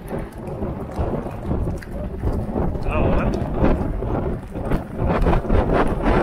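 Hoofbeats of racehorses galloping on soft ploughed ground, heard through a jockey's helmet camera with a heavy, steady rumble of wind on the microphone.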